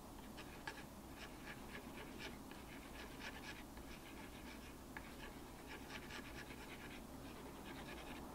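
Plastic palette knife mixing heavy-body acrylic paint with glazing medium on a craft mat: faint, quick, irregular scrapes and taps of the blade stirring and smearing the wet paint.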